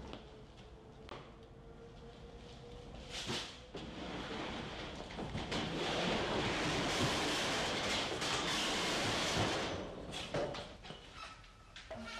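Metal roll-up shutter door being raised: a loud rattle that builds a few seconds in and eases off near the end, after a few knocks.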